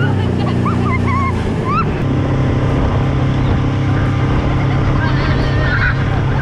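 Outboard motor running steadily at speed while towing a tube, with the boat's wake rushing and churning behind it; the engine note shifts slightly about two seconds in. High-pitched shrieks and laughter ride over it in the first two seconds.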